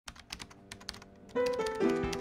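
Quick, irregular keyboard-typing clicks for about the first second, then music starts with a few sustained notes stepping down in pitch.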